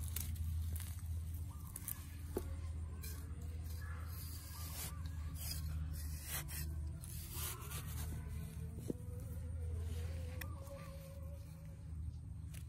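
A small hand tool scraping and cutting into garden soil to dig up a seedling, in scattered short scrapes and clicks over a steady low hum.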